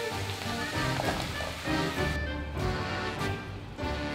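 Background music with steady sustained notes.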